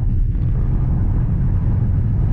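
Inside the cabin of a Voyah Free electric SUV at about 180 km/h: a steady low rumble of road and wind noise.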